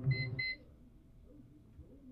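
Two quick high electronic beeps, one right after the other, as the film score cuts off about half a second in; after that only faint low sounds.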